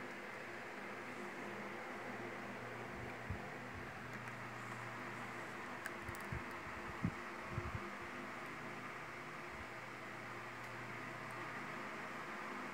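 Low, steady electrical hum and hiss of room tone, with a few soft knocks about three seconds in and again between six and eight seconds.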